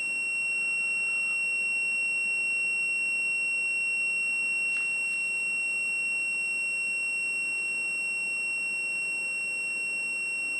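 Digital multimeter's continuity buzzer giving one steady, unbroken high-pitched tone. It signals continuity through the ELTH 261N frost stat's bimetal switch, still closed because the stat is frozen.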